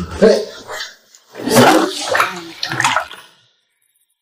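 Water splashing heavily in a filled bathtub for about two seconds as a clothed person goes into the water; it stops suddenly.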